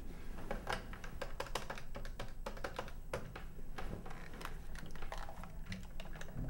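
Rapid, irregular clicking of plastic game-controller buttons and a joystick being worked by hand.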